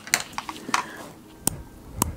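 Sharp clicks close to the microphone, done as an ASMR sound: a few soft clicks and rustles, then evenly spaced taps about two a second from midway.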